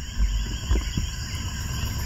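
Crickets chirring steadily in the background over a low, steady rumble.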